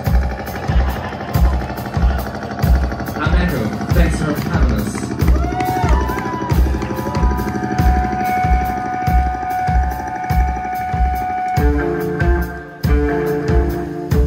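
Live rock band: a Canopus drum kit keeps a steady kick-drum beat under electric guitar notes that are held and bent, and about twelve seconds in the band comes in with fuller chords as the song starts.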